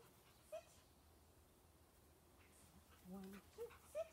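Dog whimpering in a few short, faint high squeaks: one about half a second in and two more near the end.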